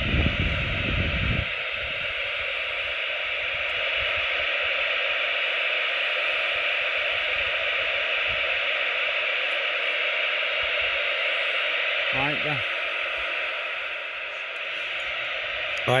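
CB radio receiver hiss from the set's speaker with the squelch open: steady static on an empty channel, with no station answering the call just put out. A faint, brief warble of a distant signal comes through about twelve seconds in, and a low rumble fills the first second and a half.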